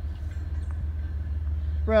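Low steady rumble of an approaching freight train's diesel locomotives, slowly growing louder.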